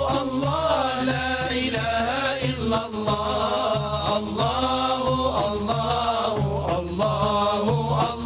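Group of men singing a devotional Arabic chant in unison, accompanied by frame drums keeping a steady beat.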